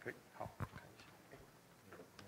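Handheld microphone handling noise: three short knocks and bumps in the first second as the mic is passed over and set down on a lectern, then low room tone.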